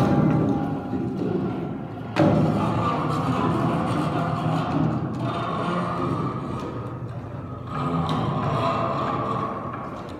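Orgue de bois, a wooden instrument of long suspended wooden strips and wires, being played by hand: a sharp knock at the start and another about two seconds in, each followed by a sustained ringing of several pitches, which swells again about eight seconds in.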